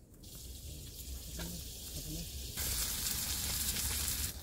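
Chopped tomatoes and green chillies sizzling in hot oil in a small metal kadai. The sizzle starts just after the start and grows much louder about two and a half seconds in.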